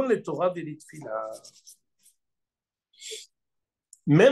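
A man speaking in French that stops about a second and a half in, followed by a pause broken only by a short, soft hiss near three seconds.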